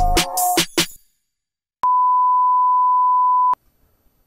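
Electronic outro music with drum hits that stops about a second in, followed after a pause by one steady electronic beep, a single pure tone that lasts under two seconds and cuts off abruptly.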